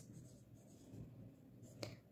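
Faint sound of a felt-tip marker writing on a whiteboard.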